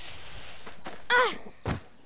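A cartoon child's voice letting out a long breathy exhale, then a short sighed "ech" falling in pitch about a second in, followed by a soft thump as the character flops down to sit on the grass.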